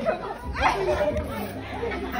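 Indistinct chatter: several voices talking at once in a room.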